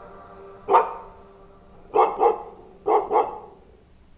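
A dog barking five times: a single bark about a second in, then two quick pairs of barks, as a held synth note fades away at the start.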